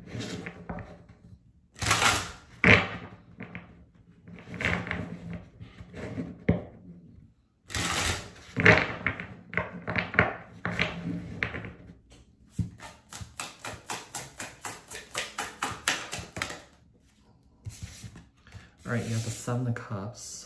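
Tarot deck being shuffled by hand: bursts of card slaps and riffles, then a run of quick, even card clicks at about five a second in the later part.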